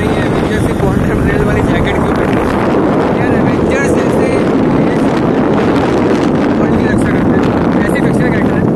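Wind buffeting a handheld camera's microphone, a loud steady rumble with a man's voice talking faintly underneath it.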